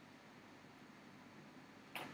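Near silence: faint steady room tone, with one brief sharp noise right at the end.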